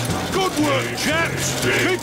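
Cartoon dwarves' digging work chant: voices sung over background music with a repeating bass pattern.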